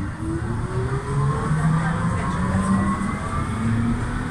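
Tram's electric traction motors whining as it accelerates, several pitches rising together over the low rumble of the running gear.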